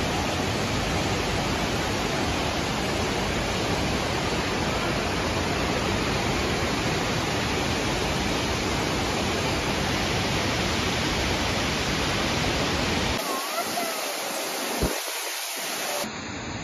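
Steady, loud rush of a large waterfall: an even noise of falling water with no break. Near the end the deep part of the noise drops away and the sound thins, with one brief click.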